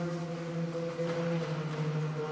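Oud playing a slow improvisation (taqsim) in maqam Saba: a low note rings on quietly, and a soft new note comes in about a second in.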